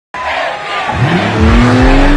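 Loud live-concert sound: a dense crowd-and-PA din starts abruptly. About a second in, a pitched sound rises in pitch and then holds steady over it.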